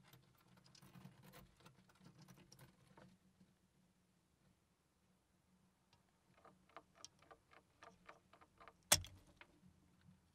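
Faint scratching and patter of mice moving over the dirt and around a wooden guillotine mouse trap, then a quick run of small clicks and one sharp snap near the end.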